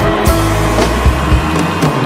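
Band music, an instrumental bar between sung lines, with sustained chords and a beat about twice a second.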